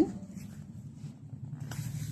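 Pen scratching on paper as a word is written, faint over a steady low hum; a broader scratch comes near the end as the pen moves on.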